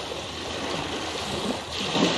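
Steady flowing water, like a running stream, with a brief dip near the end.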